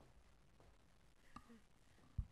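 Near silence: faint room tone, with one brief faint click a little past halfway.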